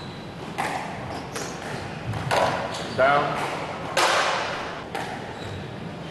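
Squash rally: the rubber ball is struck by rackets and cracks off the court walls about six times, the loudest hit about four seconds in, each ringing in the enclosed court. A short squeak comes about halfway through.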